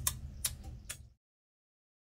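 Three sharp clicks about half a second apart over a low room hum, then the sound cuts out to dead silence a little past a second in.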